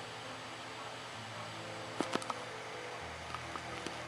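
Faint steady hiss with a low hum, broken by three quick clicks about halfway through and a few softer ticks near the end.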